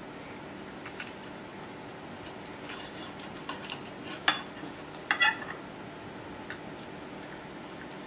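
Steel knife and carving fork clinking against a china plate a few times while slicing a braised calf tongue, the sharpest clink about four seconds in. A steady low hum runs underneath.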